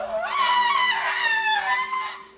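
An Asian elephant trumpeting: one loud call lasting about two seconds, rising in pitch at the start and then wavering. Soft background music with steady low notes runs underneath.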